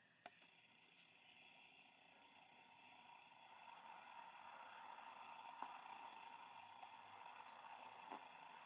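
Near silence: faint room tone with a faint steady hum that grows slightly louder after a few seconds, and a couple of faint clicks.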